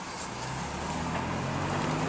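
BMW X6 M's twin-turbo V8 engine running, heard from inside the cabin: a steady low hum that grows gradually louder.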